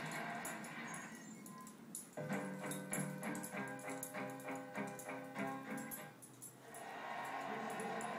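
Music from a television in the room: a short instrumental passage of held, stepping chords, starting about two seconds in and fading out about six seconds in.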